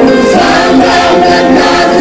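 A vocal group singing together through a stage sound system, several voices holding notes in harmony and moving to new notes about half a second in.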